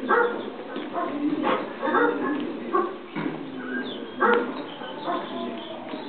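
A canine animal barking and yelping in short, repeated bursts, from a recorded soundtrack played through museum exhibit speakers.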